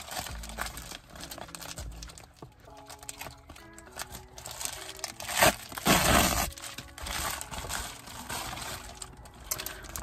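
Plastic Amazon Prime poly mailer bag crinkling as it is handled and pulled open, with a loud burst of rustling and tearing about five and a half to six and a half seconds in.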